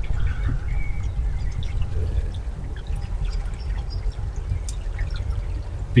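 Wind buffeting an outdoor microphone: a continuous, uneven low rumble, with a few faint short high sounds above it.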